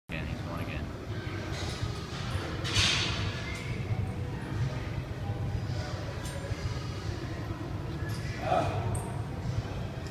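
Gym room ambience: a steady low hum with faint voices in the background, and a short hiss about three seconds in.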